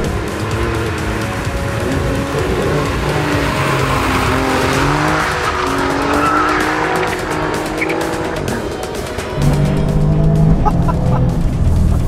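Alfa Romeo Giulia Quadrifoglio's twin-turbo V6 revving hard, its pitch climbing repeatedly as it is driven fast on a wet track, mixed with background music. The music comes up louder about nine seconds in.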